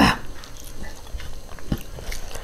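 A loud throaty vocal sound from the eater cuts off just after the start, followed by close-miked chewing and soft clicking mouth noises, with a sharper click near the end.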